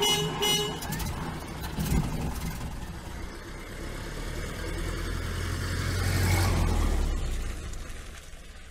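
A motor vehicle's low rumble, swelling to its loudest about six seconds in and then fading, with a few faint clicks and a brief tone in the first two seconds.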